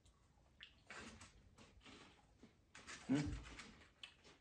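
Faint, irregular crunching of light, airy corn cheese balls being chewed, with a spoken word near the end.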